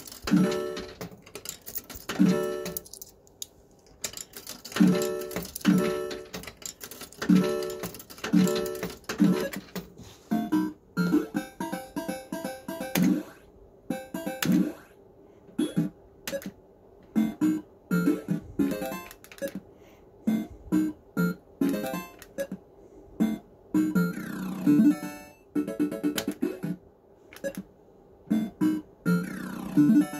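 Action Note fruit machine playing its electronic tunes and bleeps while being played: a run of short pitched tones, spaced out at first and coming in quicker, busier runs from about a third of the way in.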